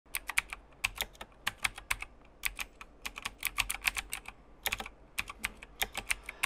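Typing on a computer keyboard: quick, irregular runs of key clicks with short pauses between them.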